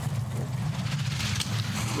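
Two-man bobsleigh running down the ice track at about 100 km/h: a steady low rumble from the steel runners on the ice, with a rapid clatter.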